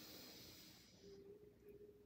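Faint, slow inhalation through one nostril while the other is held closed with a finger, in alternate-nostril yoga breathing; the airy hiss fades out about a second in, leaving near silence as the breath is held.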